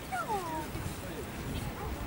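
A small dog giving a short, falling whine near the start.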